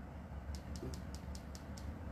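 A low steady hum with a quick, even run of about seven faint, high ticks, about five a second, starting about half a second in.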